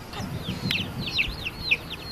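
A bird chirping in a quick run of short chirps that fall in pitch, several a second, with some low background noise in the first second.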